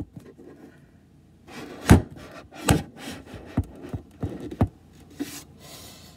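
Red plastic party cups being set down on the floor and shuffled into a row, giving several sharp plastic taps spread over a few seconds, with light rubbing and sliding between them.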